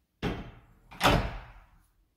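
Sliding interior door being moved: a sudden knock about a quarter second in, then a louder bang about a second in, each dying away quickly.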